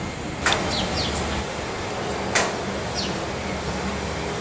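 Steady outdoor city background noise with a low hum, overlaid by a few short, quick downward-sweeping chirps; the two loudest come about half a second in and just past the middle.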